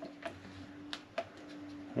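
A few faint sharp ticks and light scrapes from a clear plastic cup of epoxy being handled and mixed, over a faint steady hum.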